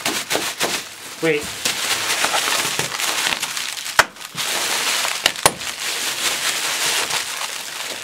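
Clear plastic air-cushion packing pillows being squeezed and wrung hard in the hands: continuous loud crinkling of the plastic, with a few sharp cracks around four and five seconds in.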